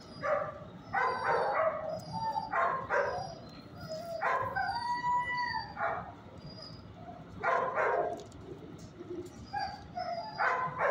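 Dogs barking in short bouts every second or two, with one longer drawn-out call about halfway through.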